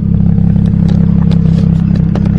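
BMW 335i's N54 twin-turbo inline-six idling steadily, heard close at the rear of the car, with a deeper exhaust note through newly fitted catless downpipes.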